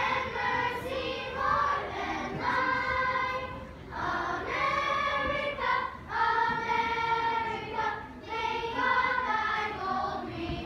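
A children's choir of boys and girls singing together in unison, holding notes in phrases about two seconds long with short breaks between them.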